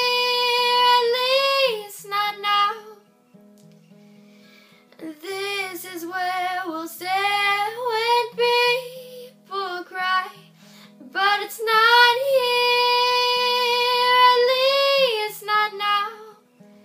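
A woman singing a folk song with long held notes to her own acoustic guitar accompaniment. The voice drops out for about two seconds, around three seconds in, leaving only the quiet guitar, then comes back.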